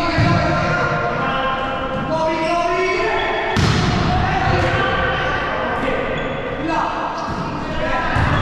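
Volleyball being struck during a rally, a few sharp thuds of hand on ball ringing in a reverberant sports hall, one near the start, one about three and a half seconds in and one at the end, with players' voices calling in between.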